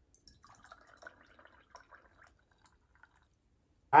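Pineapple juice poured from a can into a glass packed with ice: a faint splashing, crackly trickle that tails off a little over two seconds in.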